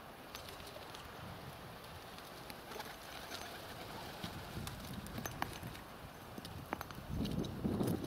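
Faint scraping and scattered light ticks of a small magnet on a string dragged over dry grass and earth, sweeping up lost screws and bits of wire. A louder low sound comes near the end.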